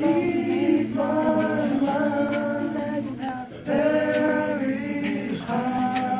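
An a cappella choir singing held chords in harmony, with a short break about three and a half seconds in before the voices come back together.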